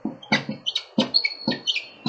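Pen or stylus strokes on a writing tablet as a word is handwritten: a quick run of short ticks and squeaks, about four or five a second.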